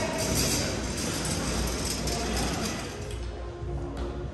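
Music playing under the rattle and clink of a loaded hand cart of equipment cases being wheeled over a hard floor; the clatter fades about three seconds in.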